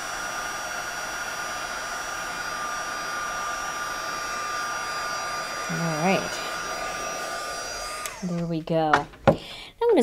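Embossing heat tool blowing hot air in a steady rush with a high whine, melting white embossing powder on card; it is switched off about eight seconds in.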